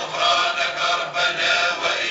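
A group of voices chanting together, loud and continuous, with held sung notes.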